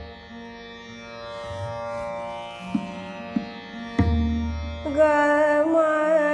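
Hindustani classical vocal in Raag Ramkeli: a steady drone and a few tabla strokes carry on through a pause in the singing, and the female voice comes back in about five seconds in with a held, gliding phrase.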